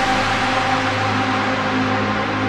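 Electronic music in a beatless break: a few held synth notes over a steady hiss.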